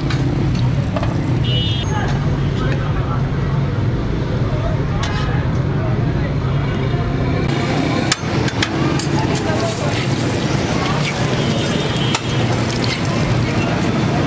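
Busy street-food stall ambience: a steady low hum under background voices and traffic noise, with scattered short clicks and clatter.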